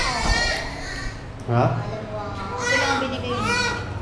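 Newborn baby crying in high-pitched, wavering wails: a short one at the start and a longer one about two and a half seconds in, with a brief low voice between them.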